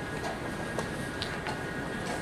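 Steady background noise of a chess playing hall with a faint steady high tone, and a few light clicks from play at the boards, the sharpest a little under a second in.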